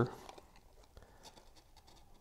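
Faint scratching and small ticks of cardstock under fingers as a glued tab is pressed and held in place.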